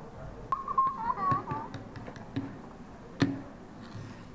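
Light clicks and taps of small plastic toys handled on a table, with a sharp knock about three seconds in. About half a second in there is a short, high, wavering voice-like sound lasting a little over a second.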